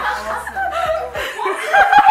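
Women laughing.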